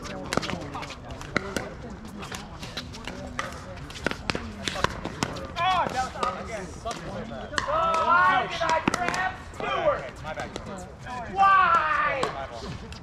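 Pickleball paddles hitting a plastic pickleball: a quick run of sharp pops during a rally at the net, with more pops from games on nearby courts. Voices come in from about halfway through.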